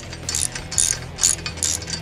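Ratchet wrench clicking in five short runs, a little over two a second, as it tightens a bolt.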